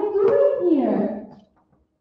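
A child's voice delivering a line, muffled and hard to make out because of poor recording, drawn out into a long falling tone about a second in before it stops.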